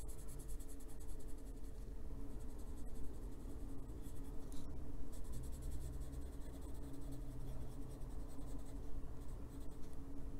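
Coloured pencil scratching on paper in runs of quick, short shading strokes, with brief pauses between runs.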